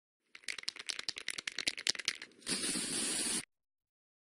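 Aerosol spray-paint can being shaken, its mixing ball rattling rapidly for about two seconds, then a burst of spray hissing for about a second that cuts off suddenly.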